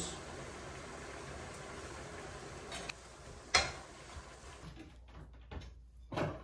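A steady low hiss, then one sharp clack about three and a half seconds in and a few faint knocks after it: kitchen utensils knocking against a cooking pan.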